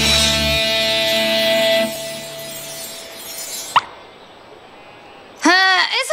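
A rock band ends a song on a held electric guitar note that rings out and fades away over about three seconds. A short rising blip comes just before it dies away.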